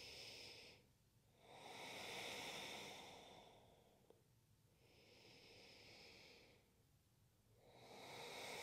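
A woman breathing slowly and faintly through the nose, each breath a soft hiss lasting one to two seconds. One breath fades out about a second in, a longer one follows, a fainter one comes near the middle, and another begins near the end. There is a tiny click just after the middle.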